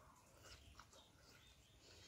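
Near silence: faint chewing of a mouthful of rice and fish curry eaten by hand, with a couple of soft mouth clicks about half a second and just under a second in.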